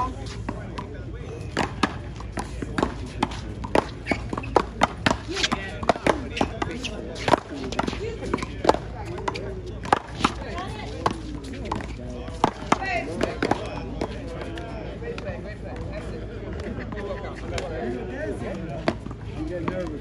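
One-wall paddleball rally: a quick run of sharp smacks as the ball is struck by paddles and hits the concrete wall, thinning out after about two-thirds of the way through.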